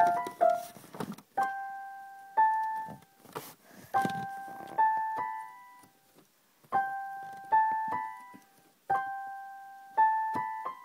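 Electric keyboard playing a short rising three-note figure four times over, each note struck and then fading.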